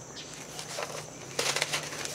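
Paper rustling and crinkling as a seed packet sheet is handled, in scattered faint crackles that grow busier in the second half. Insects chirp steadily in the background.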